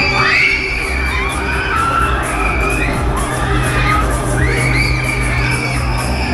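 Riders on a spinning Breakdance fairground ride letting out several long, high screams, over loud ride music with a steady beat.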